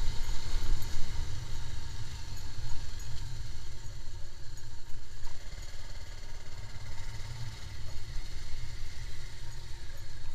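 Sport motorcycle engine running at low speed on a rough dirt lane. A heavy, uneven low rumble dominates, heard through a camera riding on the bike.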